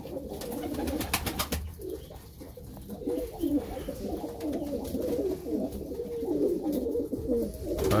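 Many domestic pigeons cooing together in a loft, a steady overlapping burble. About a second in there is a short run of sharp clatters.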